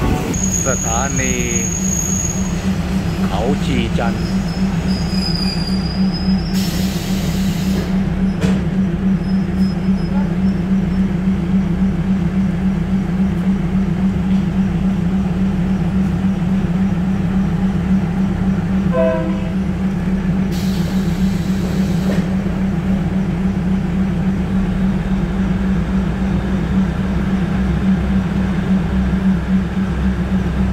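Diesel train's engine running with a steady low drone throughout. In the first few seconds the wheels or brakes squeal in short gliding tones as the train slows to a stop.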